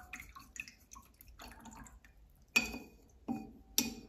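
A paintbrush being rinsed off-camera in a glass jar of water: small splashes and drips, then three sharper clinks of the brush against the glass in the second half.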